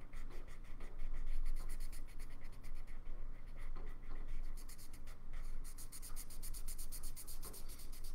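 Felt-tip marker rubbing across paper in quick, even back-and-forth strokes, several a second, as an area is coloured in.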